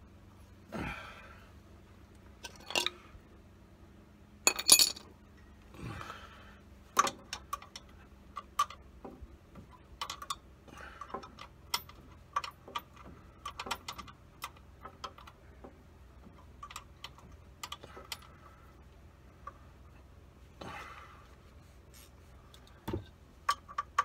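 Hand tools working on a truck's engine from underneath: scattered light metallic clicks and clinks of a wrench on bolts and brackets, with a louder metal clank about five seconds in and a few brief scraping rubs.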